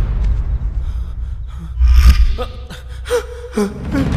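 A man gasping and straining in a struggle, over a deep rumble, with a heavy low boom about two seconds in.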